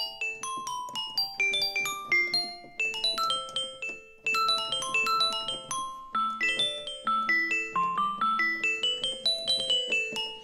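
GarageBand for iPad's Glockenspiel software instrument played on the touch keyboard: quick runs of struck, ringing notes, several a second, with a brief pause about four seconds in.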